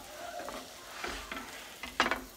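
A black bean burger patty sizzling in a hot frying pan, with a few short clicks of the spatula against the pan and a sharper knock at the end.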